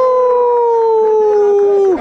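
A man's voice holding one long sung note into a handheld microphone, sliding slowly down in pitch and cutting off sharply just before the end.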